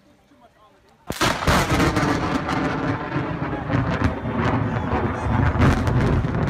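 A very close lightning strike: a sudden loud crack of thunder about a second in, then rumbling and crackling that goes on without a break.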